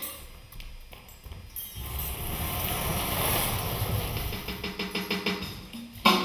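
Stage percussion: after a quiet start with a few clicks, a low rumbling swell builds from about two seconds in and turns into fast, even tapping near the end.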